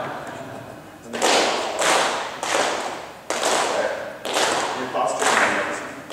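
A group of men hissing out short, sharp breaths together in a steady rhythm, about eight of them, starting about a second in: a choir breathing warm-up led by the conductor's hands.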